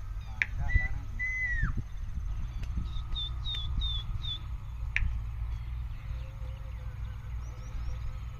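Whistling: a short note, then a longer held note that drops at its end, followed about three seconds in by four short higher notes, each falling, over a steady low rumble.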